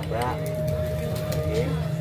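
A person's voice speaking briefly near the start over a steady low hum, with a steady held higher tone running through.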